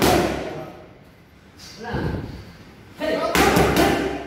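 Boxing gloves striking focus mitts in quick combinations. There is a loud flurry of thuds at the start, a lighter burst about two seconds in, and another dense flurry near the end.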